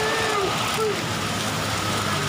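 Steady rain falling, an even hiss, with brief snatches of a woman's voice in the first second.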